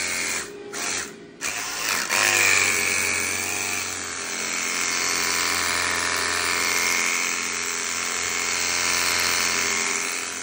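Steam cleaner running with its jet wand, the pump buzzing and steam hissing out of the nozzle. It comes in a few short bursts at first, then runs steadily from about two seconds in.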